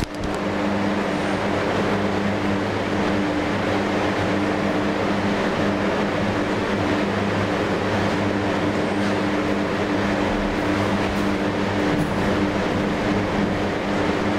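A steady, unchanging machine hum: a low drone with a few evenly spaced pitches under an even hiss.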